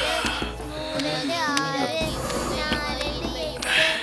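A child's voice singing a melody with music behind it, with a short hissing rush just before the end.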